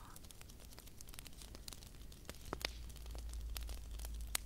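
Fingertips tapping and scratching on a glitter-coated dragon-egg prop: scattered, irregular light clicks and scratches, a few sharper ones around the middle.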